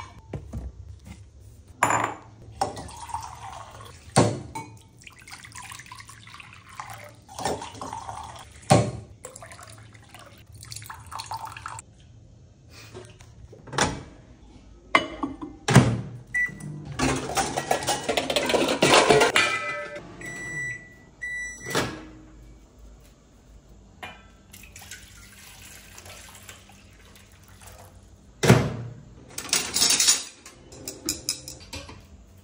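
Kitchen handling sounds: glass and containers knocked about, a stretch of water running about 17 seconds in, then a few electronic beeps as a convection microwave oven's keypad is pressed, followed by the oven running with a low steady hum. Near the end, steel cutlery and utensils clatter in a drawer.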